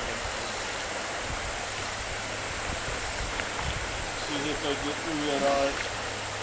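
Creek water running steadily over a shallow rocky riffle. A person's voice comes in briefly and quietly in the second half.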